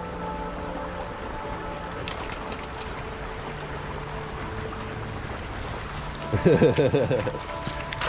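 Steady rush of flooded creek water. A short wavering vocal burst breaks in about six seconds in.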